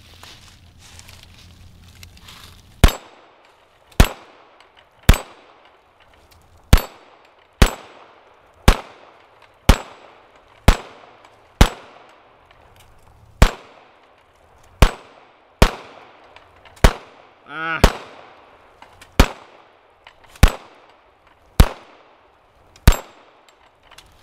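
Eighteen single shots from a B&T TP9 9 mm pistol, fired at a steady pace of roughly one a second, each followed by a short metallic ring as bullets strike the steel plates of a dueling tree.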